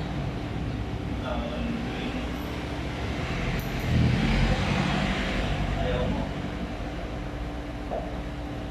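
Indistinct voices over a steady background hum, with a louder low rumble from about four to six seconds in.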